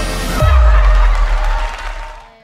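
Intro theme music: a pitched tune, then a heavy deep bass hit with a wash of noise about half a second in, fading out near the end.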